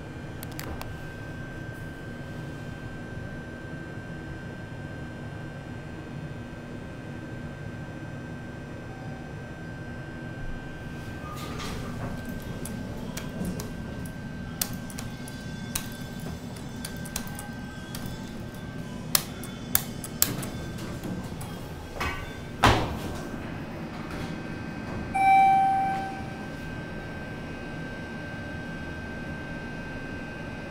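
Schindler MT glass elevator car with a steady low hum and faint background music. A few sharp clicks come a little past the middle, then a thump. Near the end the car's old-style buzz chime sounds once, a short buzzing tone and the loudest thing in the clip.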